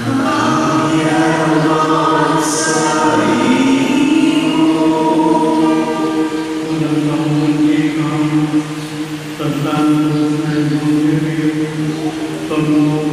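Slow sung liturgical chant: voices hold long notes, moving to a new pitch every few seconds.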